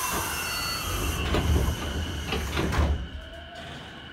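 Pneumatic passenger doors of a 205 series commuter train car closing: a hiss of air, then a run of knocks as the sliding leaves travel and meet, the loudest thump coming near three seconds in.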